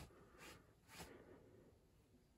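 Near silence, with three faint, soft rustles about half a second apart in the first second, from clothing and fabric being handled.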